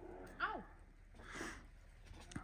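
Two short calls from big-cat cubs meeting and tussling in snow: a brief call falling sharply in pitch about half a second in, then a rougher, hissing call about a second later.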